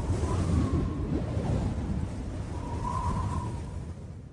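Tail of a channel intro's soundtrack: a low, noisy wash with a faint high tone swelling twice, dying away toward the end.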